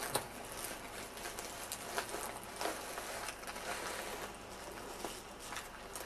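Soft, irregular rustling and crinkling of a padded paper mailing envelope and its wrapping as a wrapped package is pulled out of it, with scattered small crackles.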